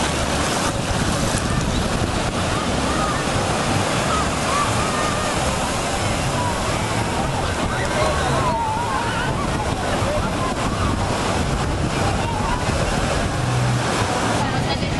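Ocean surf breaking on a beach, a steady wash of noise with wind buffeting the microphone, and distant voices of people on the beach.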